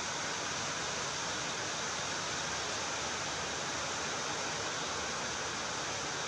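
A steady, even hiss with no distinct events.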